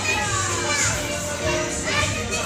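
Children playing and calling out over background music, with high voices rising and falling throughout.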